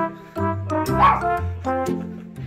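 Background music with a steady beat of evenly spaced notes, and about halfway through a short, sharp yelp from an excited golden retriever jumping up to greet a familiar person.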